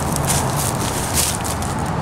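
Several footsteps crunching through dry leaves and litter, over a steady low background rumble.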